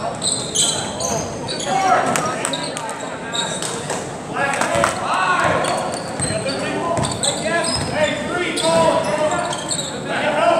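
Basketball being dribbled on a hardwood gym floor during play, with players' and spectators' voices and shouts echoing in a large gymnasium.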